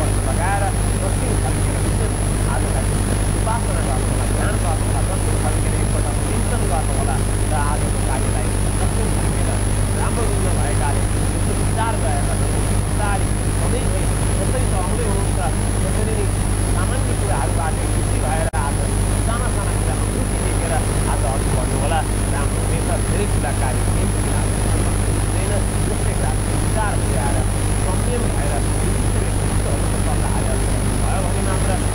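A man talking at an even pace over a loud, steady low hum and a faint high-pitched whine.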